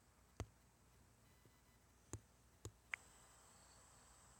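Near silence, with four faint, short clicks spread across the few seconds.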